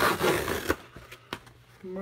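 A knife slicing through a cardboard mailer: a scraping cut in the first second, then a sharp click.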